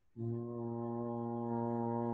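A man's voice chanting one long, steady, low note that begins just after the start. It is a sustained vocal tone of the kind used in qigong sound practice.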